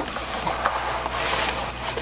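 Packaging rustling and crinkling as items are handled and pulled out of a subscription box, with a few sharper crackles among the steady rustle.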